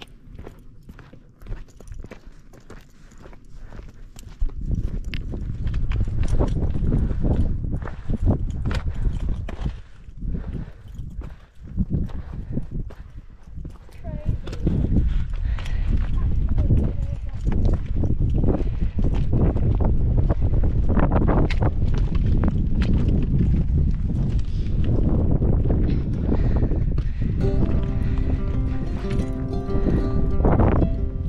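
Outdoor walking sound: wind rumbling on the microphone with scattered footsteps on grass and rock. Music comes in near the end.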